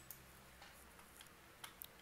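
Near silence: faint room tone with a few soft, brief clicks, one right at the start and a couple just before the end.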